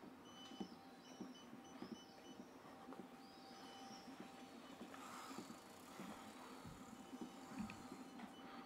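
Quiet street ambience on a cobbled lane: soft footsteps about twice a second, faint high chirps of birds, and a bicycle rolling past over the cobblestones about five seconds in.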